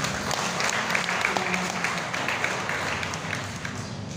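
Congregation applauding, tailing off near the end.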